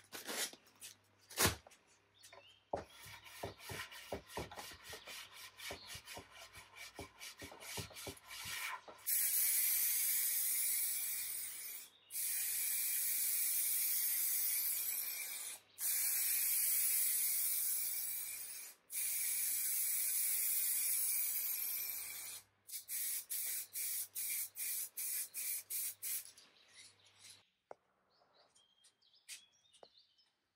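Quick rubbing strokes of light hand sanding, then four bursts of spray hiss of about three seconds each with short gaps between, as polyurethane finish is sprayed on. Near the end comes another run of quick, even strokes.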